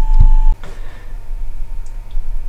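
A low thump and rumble of the camera being handled as it is switched off, over a steady hum with a faint constant tone. About half a second in this stops suddenly, leaving a quieter steady hum.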